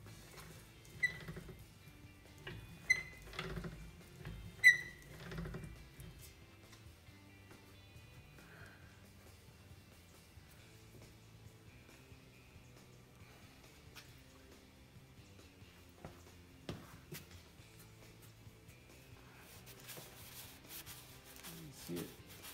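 Three sharp metallic clinks, each with a short ringing tone, from an 18-gauge steel sheet being worked in a hand-cranked slip roller; the loudest comes just before five seconds in. Faint background music sounds underneath, and handling rustle and clatter come near the end.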